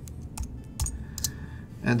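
A few separate keystrokes on a computer keyboard, typing a short layer name. A spoken word comes in near the end.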